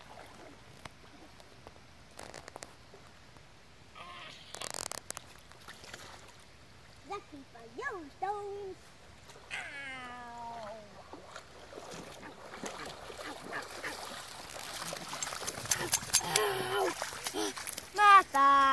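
Newfoundland dog wading in a shallow river: water sloshing and splashing around its legs, with a burst of splashing about four seconds in and a busy run of splashes and steps near the end as it comes out close by.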